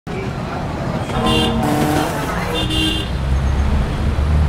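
City street traffic noise with a car horn sounding twice, about a second in and again around two and a half seconds in, over a steady low rumble of traffic.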